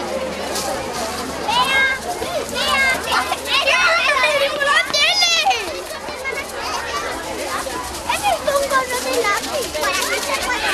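Crowd of children chattering and shouting, with high-pitched calls loudest and densest from about two to five seconds in, over general street crowd noise.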